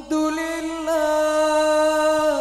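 A solo male voice singing an Arabic sholawat without accompaniment. After a brief break at the start it holds one long note steadily, with a slight waver.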